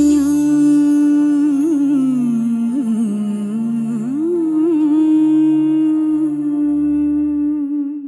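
A voice humming a long, ornamented melody over soft low musical accompaniment, as a Mappila song closes. It fades out at the very end.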